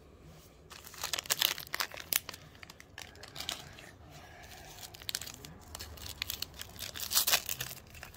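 Foil wrapper of a Pokémon Battle Styles booster pack crinkling and tearing as it is opened, in irregular sharp crackles starting about a second in and again near the end.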